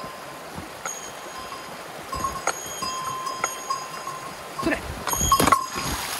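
A shallow stream runs over stones under a bell-like chiming that rings several times. Near the end come a few sharp thuds and splashes as a person jumps across the stream.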